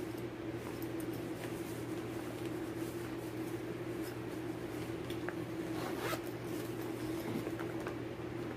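Zipper of a clear-vinyl zippered project pouch being opened and the kit inside handled, with faint small clicks and rustles over a steady low hum.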